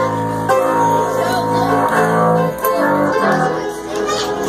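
A live bluegrass band playing an instrumental: mandolin, five-string banjo, acoustic guitar and upright bass. Held notes change to a new chord about halfway through.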